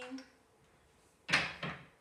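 A wooden toy train being moved and set down on a desk: two quick clattering knocks about a third of a second apart, just past halfway.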